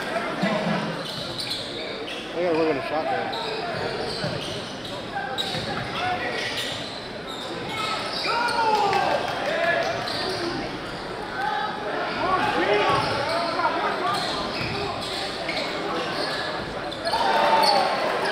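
Live high school basketball game sound in a gym: a basketball bouncing and sneakers squeaking on the hardwood court over a steady murmur of crowd voices, echoing in the large hall.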